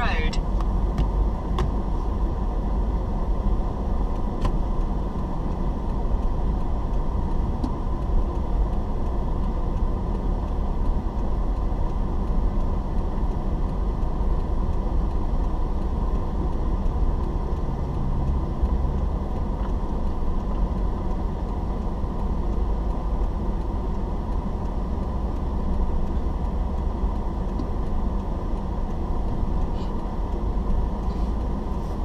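Steady low engine and road noise of a car in slow traffic, heard from inside the cabin, with a few faint clicks in the first seconds.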